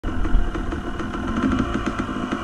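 Off-road vehicle engine running steadily.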